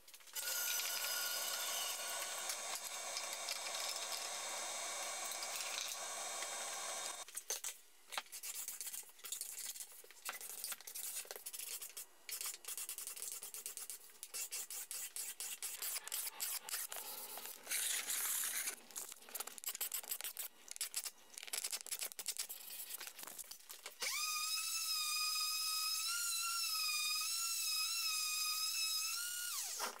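Woodworking tool sounds in sequence: a high-pitched power-tool noise for about the first seven seconds, then irregular scraping and rubbing strokes on wood, then a power tool running with a steady high whine for the last six seconds that cuts off just before the end.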